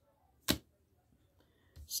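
A single sharp click about half a second in, as a tarot card is laid down on the table.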